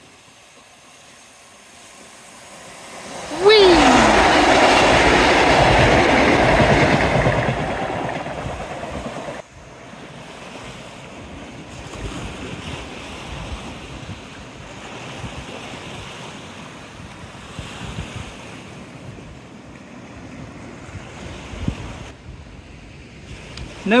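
A train passing close by on the seawall line: a sudden loud rush of wheel and engine noise that starts a few seconds in, lasts about six seconds and cuts off abruptly. After that, softer waves washing against the sea wall.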